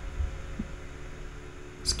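A low hum with a faint, uneven low throb underneath, and no other distinct sound. A man's voice starts a word at the very end.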